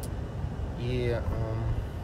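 Steady low rumble of a car driving, heard from inside the cabin. A short voiced murmur from a man comes in about a second in.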